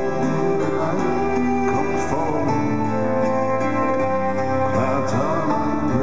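Live band playing an instrumental passage of a slow song: guitar notes over long, held keyboard chords.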